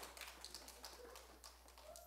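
Near silence in a room, with faint scattered taps and clicks.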